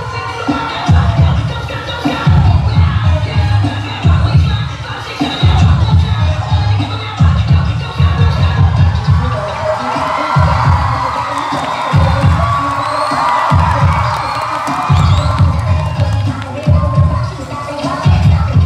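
Loud dance music over a hall's PA, with a heavy bass that pulses in blocks of a second or so, under a crowd cheering and shouting.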